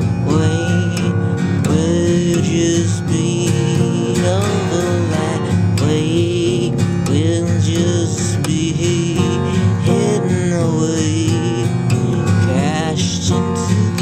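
Steel-string acoustic guitar strummed in a slack, detuned open tuning that gives a droning, sitar-like sound, with a melody line sliding up and down in pitch over the chords.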